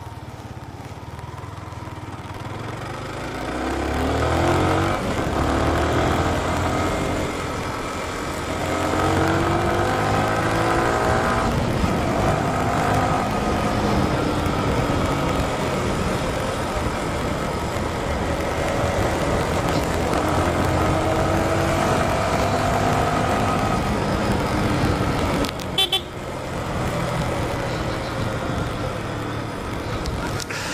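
Sport motorcycle engine pulling through the gears while riding, its pitch rising in several long sweeps with breaks at the shifts, over steady wind and road noise. A brief sharp double blip about four seconds before the end.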